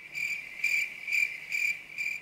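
Cricket chirping sound effect, a steady high trill pulsing about twice a second that cuts off suddenly: the classic 'crickets' gag marking an unanswered question.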